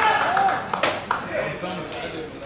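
Male voices calling out across an open football pitch, loud at first and fading, with one sharp crack, like a clap or a kick of the ball, just under a second in.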